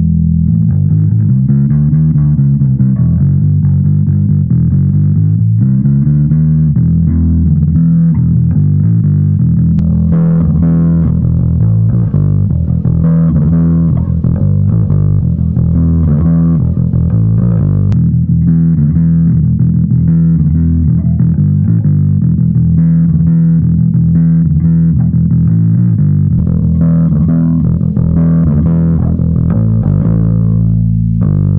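Electric bass played with overdrive, heard first through an Aguilar DB 210 cab picked up by an sE VR1 ribbon mic and then through an Origin Effects BassRig Super Vintage DI. There are several sliding notes in the first few seconds, and the tone turns brighter about ten seconds in.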